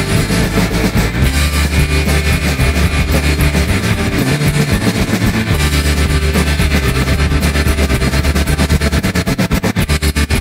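Loud psychedelic rock music with distorted guitar over long held bass notes. Near the end the sound turns into a fast, even pulsing.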